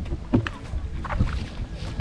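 Irregular splashes and knocks as a hooked thin-lipped mullet is scooped into a landing net in the water beside a kayak.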